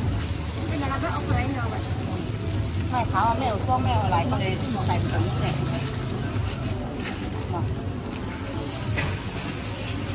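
Thai roti dough sizzling in hot oil on a large flat round griddle, a steady hiss over a low hum, with voices talking at times.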